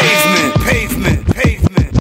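Hip hop music with a rapped vocal: a held, pitched tone gives way about half a second in to sharp drum hits and short vocal snatches.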